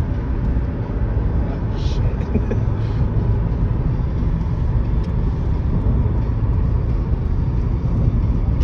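Steady low rumble of a Ford sedan driving, engine and tyre road noise as heard inside the cabin.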